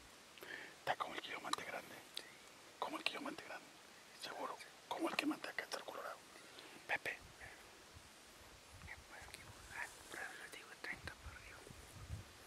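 Low whispering voices in short, broken bursts, with a few soft clicks mixed in.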